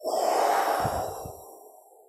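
A woman's forceful breath blown out through pursed lips, starting loud at once and tailing off over about a second and a half. It is the exhale of a breathing exercise, the 'earth' sound meant to blow worry out of the stomach.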